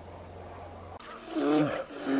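Two drawn-out vocal calls, each falling in pitch, beginning about halfway through, after a steady low hum stops abruptly.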